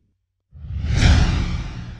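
A whoosh sound effect for a closing logo animation: after a half-second of silence it swells up quickly, peaks about a second in, then fades.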